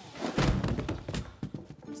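Film soundtrack: background music with a heavy low thud about half a second in, followed by several lighter knocks.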